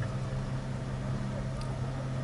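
Car engine running, heard from inside the cabin as a steady low hum.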